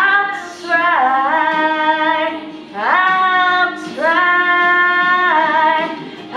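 A young woman singing solo into a handheld microphone: a few drawn-out, wordless-sounding held notes, each sliding into its pitch, the longest held for over a second near the middle.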